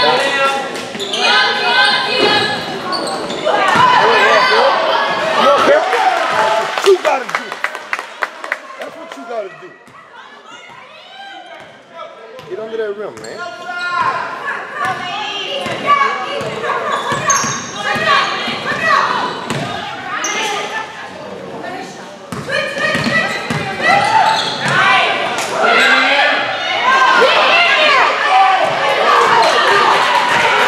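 Basketball bouncing on a hardwood gym floor during play, amid shouting and talking from players and spectators that echoes in the large hall; the sound dips for a few seconds about ten seconds in.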